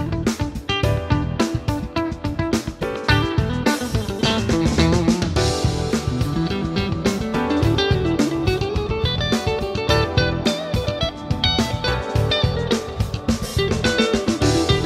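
Fender Custom Shop 1965 Telecaster Custom Heavy Relic electric guitar played with a clean tone, picking single-note melodic lines, with a run that climbs and then falls midway. A steady drum beat runs underneath.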